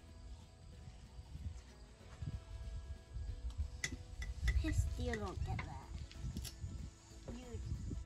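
Low rumble of wind on the microphone, with faint voices and a few light clinks about halfway through.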